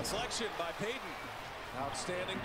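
A basketball bouncing on a hardwood court, a few bounces near the start, under broadcast commentary.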